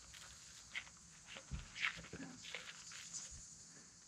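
Bicycle rolling slowly off grass onto a paved road: faint, irregular soft clicks and rustles from the bike and its tyres.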